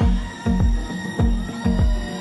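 Live concert music without vocals: a slow hip-hop beat with deep, booming bass-drum hits that slide down in pitch, landing roughly every half second.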